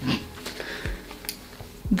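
Quiet handling of cloth and leather belts: a short breath at the start, faint rustling, and two soft dull thumps as one belt is tossed aside and the next is picked up.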